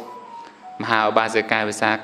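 A man's voice delivering a Buddhist sermon in Khmer in a melodic, chant-like way, starting about a second in after a short pause. A faint thin tone sounds during the pause.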